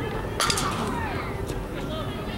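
A single sharp crack about half a second in, echoing briefly in the dome, and a fainter click about a second later, over distant voices.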